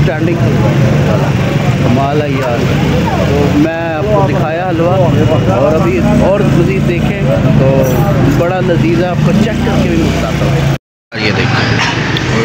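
A man talking over busy street noise, with a steady engine hum underneath. The sound drops out to silence for a moment near the end.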